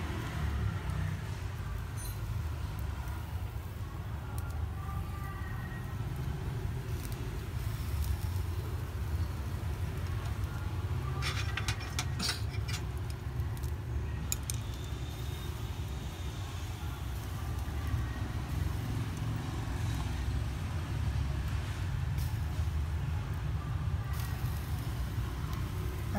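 A steady low rumble, with a cluster of sharp clicks about eleven to thirteen seconds in as chopsticks tap the wire grill rack while the leaf-wrapped beef rolls are moved over the charcoal.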